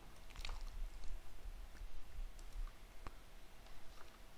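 Faint computer keyboard keystrokes: a few separate, widely spaced clicks.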